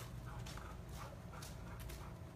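A dog panting faintly, a few short breaths.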